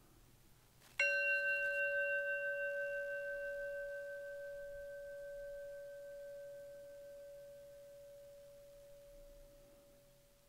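A meditation bell struck once about a second in, ringing with one clear tone and a few higher overtones that fade slowly over about nine seconds, its loudness wavering as it dies away. It closes the guided meditation.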